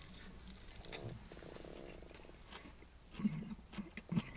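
A person chewing a mouthful of tortilla wrap: faint wet mouth clicks, with a short, soft hummed "mm" a little after three seconds in.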